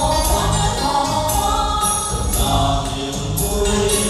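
Amplified stage song: a group of voices singing in chorus over backing music with a steady percussion beat.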